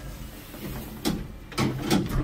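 Automatic doors of a Nova glass passenger lift sliding shut: a low mechanical hum with knocks about a second in and twice near the end as the doors close.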